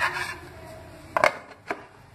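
A lid being set on a bowl of food: a short scrape at the start, then a quick double knock a little over a second in and a single lighter knock just after.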